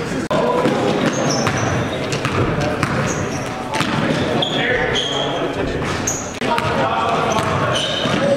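Live basketball game sound in a large gym: a basketball bouncing on the hardwood floor, short high sneaker squeaks, and players' indistinct calls and voices echoing around the hall.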